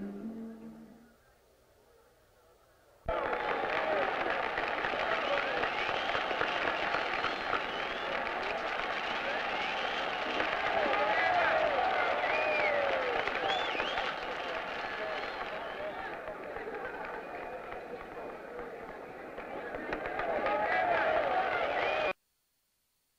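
A large crowd cheering and shouting, many voices overlapping with scattered clapping, starting abruptly about three seconds in. A faint steady high tone runs beneath.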